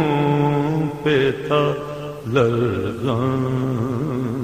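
A voice singing an Urdu naat, drawing out long held notes with vibrato between lyric lines, with short breaks about one and two seconds in.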